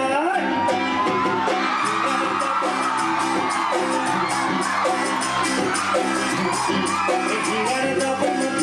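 Live stage band music: a male singer with a microphone over electric guitar and a steady percussion beat.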